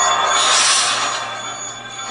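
Television episode soundtrack playing: a music bed with a rushing whoosh that swells about half a second in and fades over the next second.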